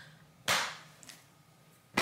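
A single sharp hand slap about half a second in, fading quickly.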